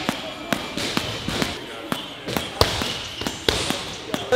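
Bare feet landing in a quick, even rhythm on rubber gym mats during cardio hopping, a sharp slap about twice a second.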